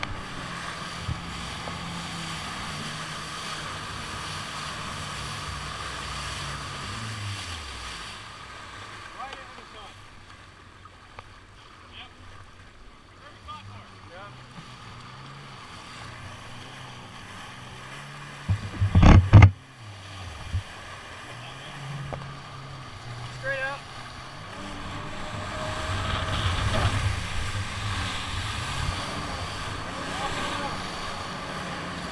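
Jet ski engine running, its pitch falling about seven seconds in as the throttle comes off, then running lower with water splashing against the hull. A brief loud burst of water and wind noise comes about two-thirds through, and the engine grows louder again near the end.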